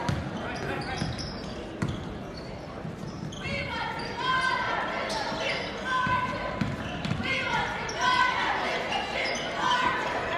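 Basketball dribbled on a hardwood gym floor, thudding at irregular intervals, with voices echoing through the large gym.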